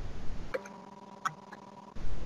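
A low rumble on the microphone, then three short, sharp clicks at a computer, the last two close together.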